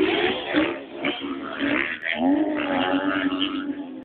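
Several off-road motorcycle engines revving hard as the bikes accelerate away from a race start. The pitch climbs and drops with throttle and gear changes, with one clear rise a little after two seconds in.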